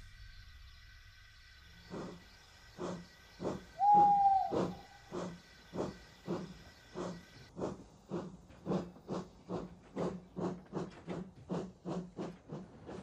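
Steam locomotive starting away with its train: exhaust chuffs begin about two seconds in and quicken steadily to about three a second. A short whistle blast about four seconds in is the loudest sound, dropping in pitch as it ends.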